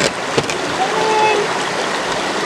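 Creek water running, a steady rush, with a couple of light clicks in the first half-second.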